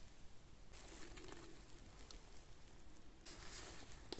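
Near silence, with faint soft rustling of satin knotting cord being pulled through the knot, twice: about a second in and again near the end.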